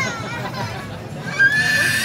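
A short knock about one and a half seconds in, then a high-pitched excited voice crying out, a long held squeal that rises slightly.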